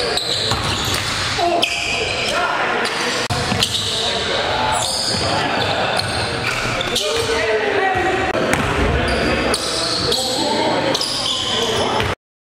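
Live sound of an indoor basketball game: the ball bouncing on the gym floor and players calling out, echoing in a large hall. The sound cuts off suddenly at the end.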